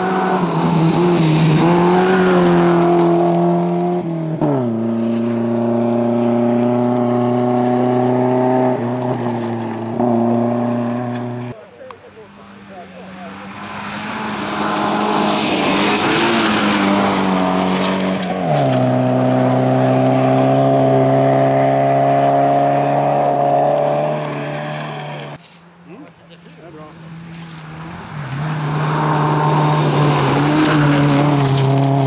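Rally cars passing one after another at speed on a gravel stage, three in turn, engines held at high revs. Each engine note drops sharply as the car goes by, holds, then cuts away as it leaves. Between cars there is a rising hiss of tyres and gravel as the next one approaches.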